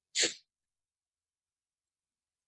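A single short, breathy burst of sound from a person, about a quarter of a second long, just after the start.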